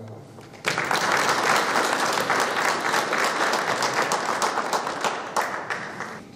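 Audience applauding in a hall: many hands clapping, breaking out about a second in, holding steady and thinning out near the end.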